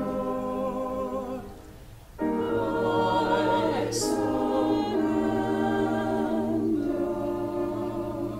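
Small church choir singing an anthem: sustained chords in two phrases, with a short breath pause about two seconds in.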